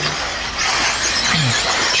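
Electric eighth-scale RC buggies running on the dirt track, a loud rushing hiss of motors and tyres that swells about half a second in as cars pass close by.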